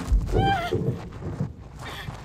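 A woman crying out in distress, with a short, high, wailing sob that rises and then falls about half a second in.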